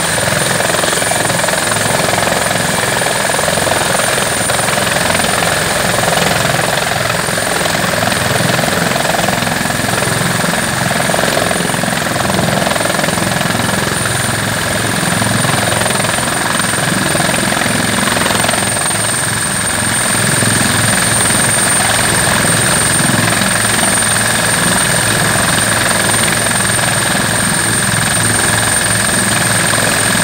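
Fire-service rescue helicopter running on the ground close by with its rotors turning: a loud, steady rotor and engine noise with a constant high turbine whine.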